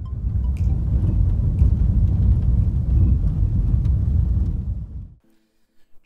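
Car driving on a gravel road: a dense low rumble of tyres on loose gravel, heard from inside the car, cutting off suddenly about five seconds in.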